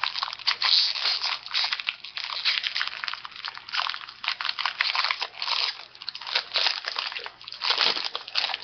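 Crinkling and rustling of a trading-card pack's wrapper being opened and handled, with quick crackles in an uneven stream.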